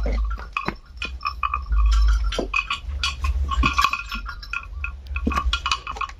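Irregular metallic clinking of a small bell on a nursing calf's neck as it moves under its mother, over a low rumble that swells about two seconds in.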